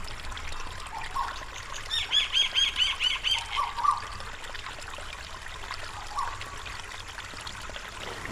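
A bird calling: a quick run of about eight repeated high notes, roughly five a second, about two seconds in, with a few fainter chirps before and after.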